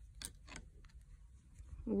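A few faint clicks of metal Addi CraSy Trio Novel knitting needles in the first second, as stitches are knitted off one needle onto another.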